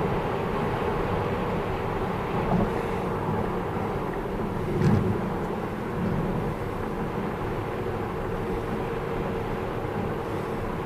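Steady tyre and road noise heard inside the cabin of a 2020 Tesla Model S at highway speed, with no engine note from the electric drive. A short thump about halfway through.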